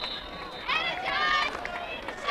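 A raised voice shouting for under a second, starting about two-thirds of a second in, over outdoor background noise. The faint tail of a referee's whistle blowing the play dead fades at the very start.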